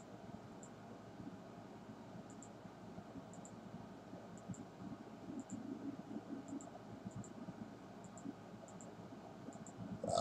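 Faint computer mouse clicks, each a quick double tick of button press and release, coming irregularly about once a second over a low steady hiss.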